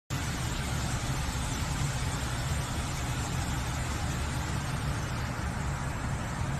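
Steady low rumble with an even hiss over it, unchanging throughout: a continuous machine-like ambient drone.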